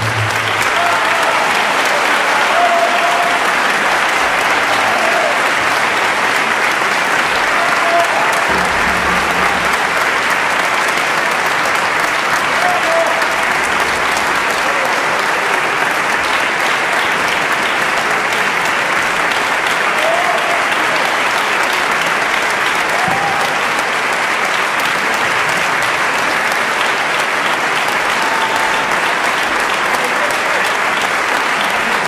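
Concert audience applauding steadily at the end of a piece.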